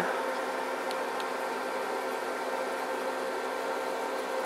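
Steady low hum with an even hiss, unchanging throughout.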